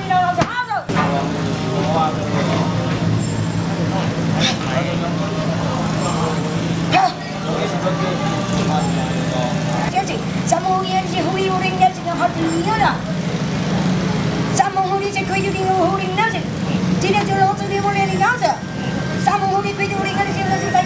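Several people talking over a steady low hum, with a few sharp clicks or knocks.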